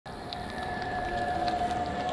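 White Toyota RAV4 SUV rolling up slowly at low speed, a steady high whine that grows louder as it approaches.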